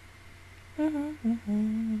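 A woman humming with closed lips: three notes, each a little lower than the last, starting a little under a second in, with the last note held.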